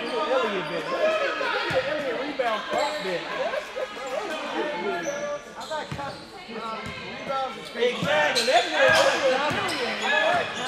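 Basketball bouncing on a hardwood gym floor: a handful of separate, irregular bounces, under continuous indistinct voices of players and spectators talking and calling out, echoing in the hall.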